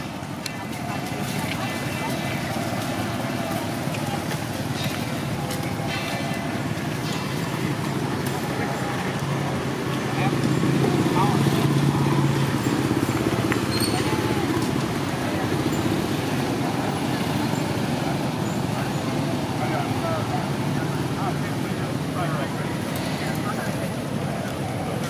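Steady background with a low motor-vehicle engine hum that swells about ten seconds in and eases off a few seconds later, with faint short high chirps scattered over it.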